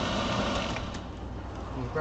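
The 1982 Tioga motorhome's heater blower runs with a steady rush over the low rumble of the idling engine. After a faint click about a second in, the rush thins and the engine rumble carries on.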